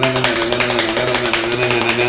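Rapid ticking of a roulette-wheel app spinning on a phone, over a man's voice holding one steady note.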